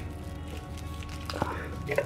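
Soft background music with steady held notes, and a couple of faint clicks in the second half as small objects are picked out of a clear plastic bowl.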